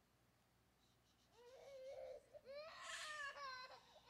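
A young child or baby fussing and crying faintly, a few whiny, wavering cries starting about a second in.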